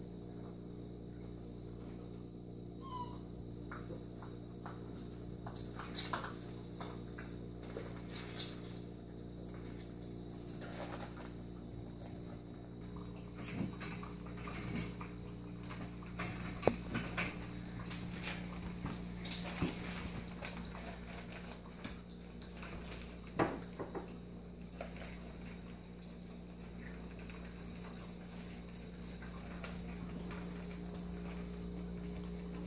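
Puppies eating dry kibble from a metal tray and bowls: scattered small crunches and clicks of kibble against metal, with a few louder knocks, over a steady low hum.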